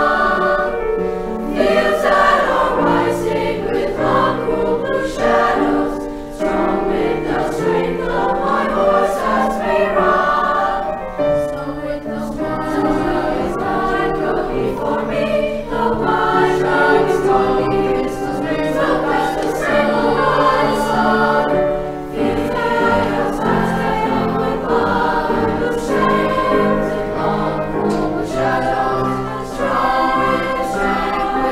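SAB choir (sopranos, altos and baritones) singing in three parts with piano accompaniment.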